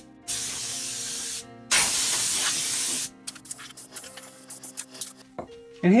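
Compressed-air blow gun blasting dust and straw out of a vehicle cab floor in two bursts of hiss, the first about a second long and the second a little longer and louder. After the blasts, scattered faint ticks.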